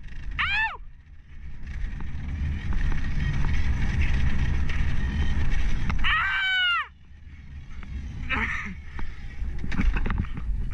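Enduro dirt bike engine running under way, with the revs sweeping up and dropping sharply twice, the second time near the middle of the clip, after which the engine note falls away.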